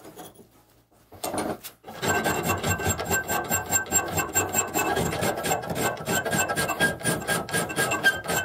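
Round file rasping on the steel blank of a leathercraft round knife held in a bench vise, shaping its curved cutout. After a short bout of strokes, the filing settles into fast, even back-and-forth strokes about two seconds in, with a thin high ring under them.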